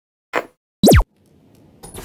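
Logo-intro sound effects: a short swish, then a loud, brief zap about a second in with its pitch gliding up and down, followed by a faint swell building near the end.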